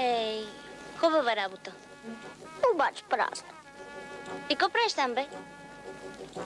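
A woman's voice making wordless sliding cries, about five of them, each swooping up and down in pitch, over a faint steady background tone.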